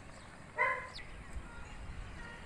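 A dog barks once, a single short call about half a second in, over a faint outdoor background.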